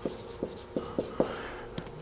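Dry-erase marker writing on a whiteboard: a run of short squeaky strokes, about six in two seconds, as letters are written.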